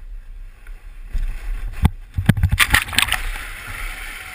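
Plastic whitewater kayak sliding down a steep dirt bank in a seal launch: a low rumbling slide, a run of hard knocks around the middle, then the hull hits the river and water splashes and rushes along it.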